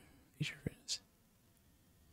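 A man whispering briefly under his breath, a few faint short sounds with a small mouth click, in the first second.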